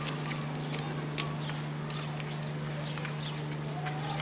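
Footsteps on a paved street, irregular light clicks about two a second, over a steady low hum.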